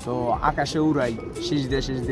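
A man talking, with domestic pigeons cooing from the wire loft beside him.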